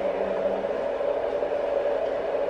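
Steady whirring noise with a constant hum underneath, unchanging throughout.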